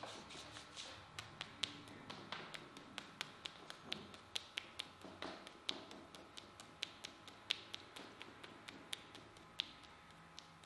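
Massage taps by a hand on a bare arm: quick, sharp slaps on skin, about four a second, some harder than others.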